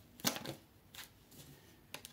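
Tarot cards being shuffled by hand: one sharp card snap about a quarter-second in, then a few lighter card flicks and rustles.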